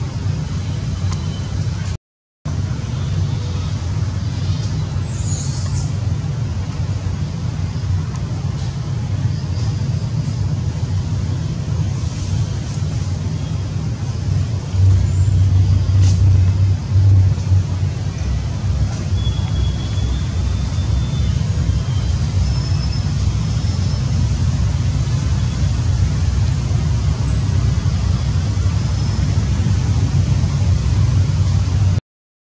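A steady low rumble, stronger for a few seconds midway, with faint short high chirps now and then. The sound drops out completely for a split second about two seconds in.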